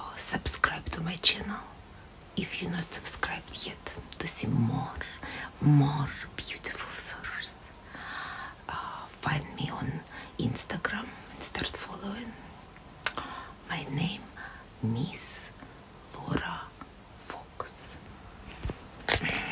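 A woman whispering close to the microphone, in short phrases with pauses.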